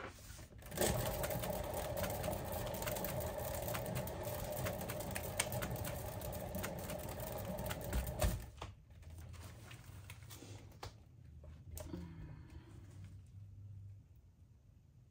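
A paint-pouring spinner turning under a wet canvas, making a steady mechanical whirr and rattle that starts suddenly and stops abruptly after about seven seconds. The spin stretches the poured bloom outward across the canvas.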